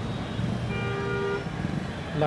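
A vehicle horn sounds once, a steady toot of under a second about midway, over a low rumble of road traffic.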